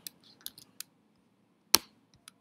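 Computer mouse and keyboard clicks: a few faint clicks, then one sharp, louder click near the end.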